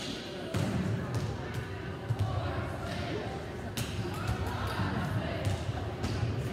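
Volleyballs being hit and bouncing on a hardwood gym floor, sharp smacks coming at irregular intervals and echoing in the large gym, over a background of indistinct chatter.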